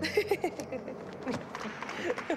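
Indistinct murmur of several voices mixed with scattered sharp clicks and knocks, with no clear words.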